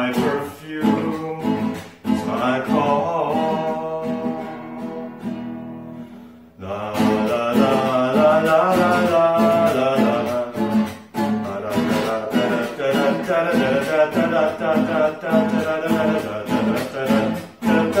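Male voice singing to a strummed nylon-string classical guitar. About six seconds in the music fades almost to a stop, then strumming and singing come back fuller, with wordless "da da da" vocals near the end.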